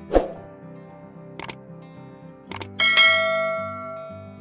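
Subscribe-button animation sound effects over soft background music: a quick falling swoosh with a thud at the start, a double mouse-click about a second and a half in and another about a second later, then a notification-bell ding that rings and fades away.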